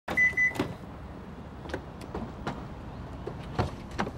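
Car remote key fob lock signal: three quick short high beeps from the car, followed by a few scattered soft knocks.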